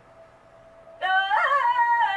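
A quiet moment with a faint steady hum. About a second in, a high-pitched woman's voice says a drawn-out, wavering "yeah".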